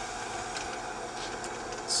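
Bench drill press motor and spindle running steadily with a center drill in the chuck, a even mechanical hum.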